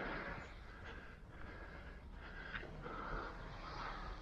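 Soft, irregular footsteps on a sandy path, with faint breathing close to the microphone.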